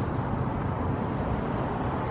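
Steady low outdoor background rumble with no distinct event standing out.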